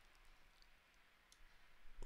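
Near silence, with a few faint, short computer-mouse clicks.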